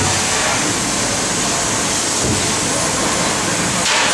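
TRUMPF laser cutting machine cutting sheet metal: a loud, steady noise with a bright high hiss from the cutting jet and the running machine.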